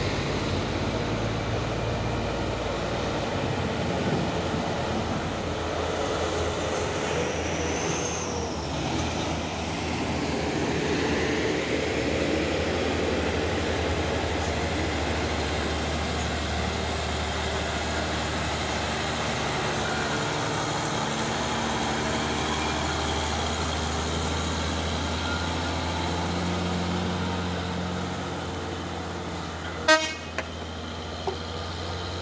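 Diesel engine of a Mercedes-Benz Axor cargo truck running steadily under load as the truck pulls slowly up the hill and past, with a deep, even hum throughout.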